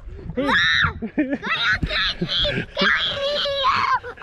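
People laughing, with a high-pitched shriek about half a second in, followed by more breathy laughter.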